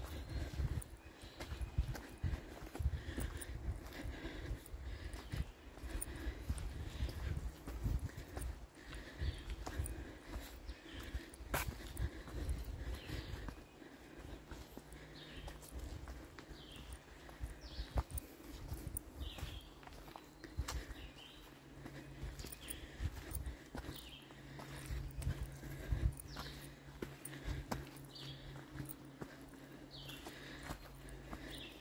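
Footsteps of hikers on a dirt and rock forest trail, irregular crunches and thuds with the low bumps of a hand-held camera carried while walking.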